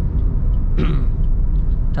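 Steady low rumble of road and engine noise inside the cabin of a moving Suzuki Ertiga.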